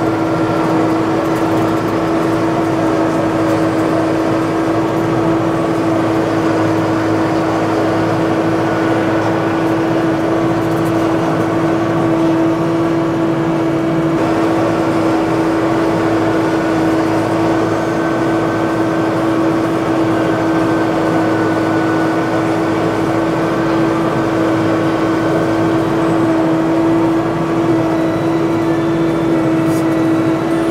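Kubota tractor's diesel engine running steadily under load as it works a land plane over fresh gravel, with a steady whine throughout.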